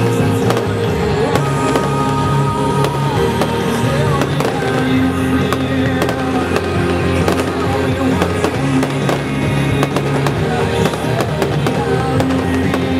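Aerial fireworks shells bursting and crackling in many sharp, irregular reports over loud music with long held notes.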